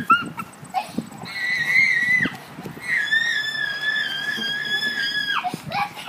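A child screaming: two long, high-pitched held screams, the first about a second long, the second over two seconds long and dropping off in pitch at its end.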